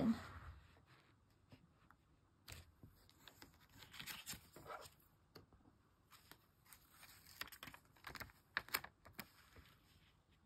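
Paper sticker backing being peeled off a Panini sticker, then the sticker pressed and smoothed onto the album page: soft paper rustles and light clicks in scattered bursts, busiest near the end.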